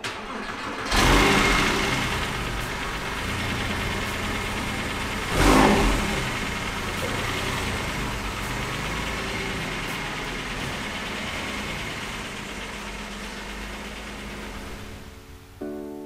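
2006 Porsche 911 Carrera's flat-six engine starting about a second in, revved once about five seconds in, then running steadily and slowly fading as the car drives away.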